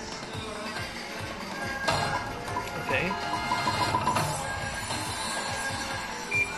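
Lightning Link High Stakes slot machine playing its game music and sound effects during a free-game spin, with a sharp hit about two seconds in and a short run of pitched notes in the middle as the reels play out. Casino voices in the background.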